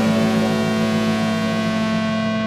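Rock band of electric and acoustic guitars, bass and cymbals holding a final chord as it rings out, the cymbal hiss fading away while the low notes sustain.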